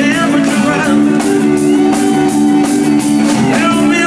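Live band playing an up-tempo rock and roll number, with electric guitar, drum kit and sustained backing instruments, and a male singer coming in near the start and near the end.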